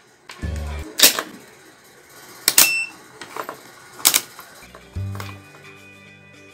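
Three sharp clicks about a second and a half apart as a small plastic rocker switch is handled, with soft background music underneath.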